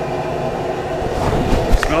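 Gas burner running steadily under a stainless brew kettle of wort brought back to the boil. A few low knocks of camera handling come near the end.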